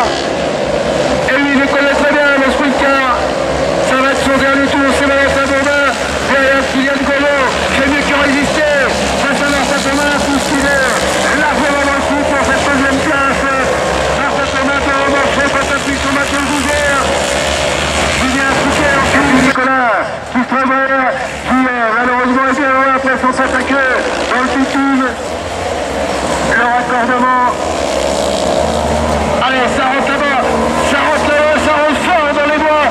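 Autocross race cars' engines running hard around a dirt circuit, their pitch repeatedly rising and falling as they rev and lift, with no pause.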